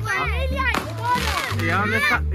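Several children's voices talking and shouting over one another, with music with a steady bass line playing behind them.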